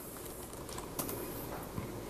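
A few keystrokes on a computer keyboard as a command is typed and entered. The clicks are scattered, with the clearest about a second in and another near the end.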